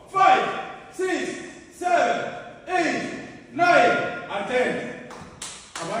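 A voice calling out in a steady rhythm, about one sharp call a second, each one falling in pitch as it fades, paced with rapid sit-ups.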